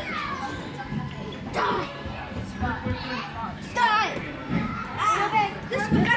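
Young children's voices at play, calling out and squealing in high bursts over the background chatter of a busy indoor play area.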